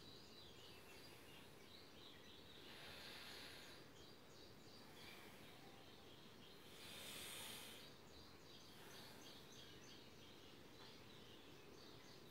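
Faint nasal breathing during alternate-nostril pranayama (anulom vilom): soft hisses of about a second, a few seconds apart, the clearest about three and seven seconds in, over near-silent room tone.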